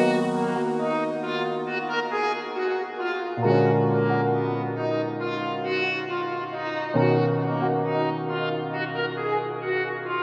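Background music of long held chords that change about every three and a half seconds.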